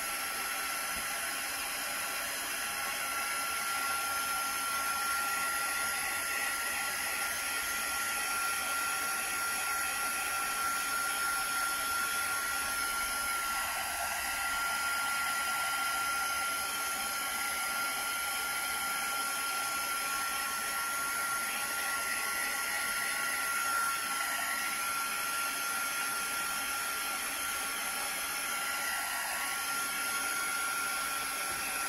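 Handheld craft heat tool blowing steadily, a constant rush of air with a thin high whine, used to dry a napkin decoupaged onto paper.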